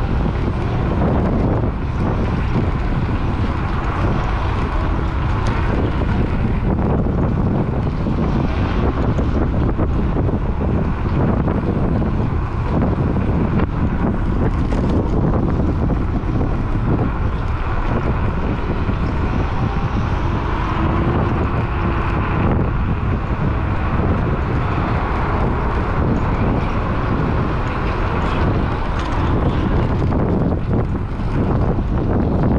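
Steady wind rush buffeting a GoPro's microphone on a moving electric scooter, with a low rumble of road noise under it.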